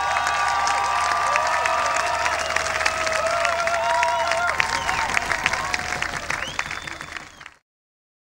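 Large audience applauding and cheering, dense clapping with many overlapping shouts and whoops, cutting off suddenly near the end.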